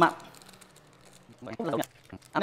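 Mostly speech: a man's voice ends a word at the start and speaks again near the end, with only faint handling noise in the quiet gap between.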